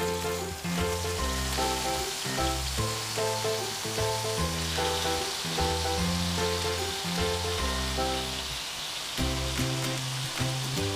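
Marinated chicken pieces sizzling in hot oil on a tawa as more pieces are laid down, under background music with a bass line that changes every half second or so.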